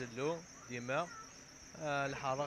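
A man talking in short phrases into a handheld microphone, over a steady high-pitched hiss.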